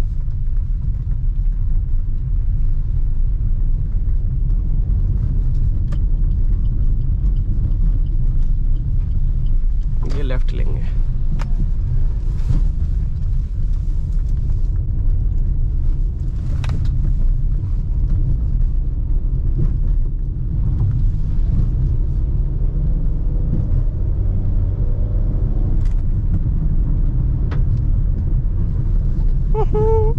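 In-cabin road noise of a Maruti Suzuki Ciaz driving slowly over a rough, potholed road: a steady low rumble of engine and tyres, broken by a few brief knocks and rattles as the car rides over the bumps.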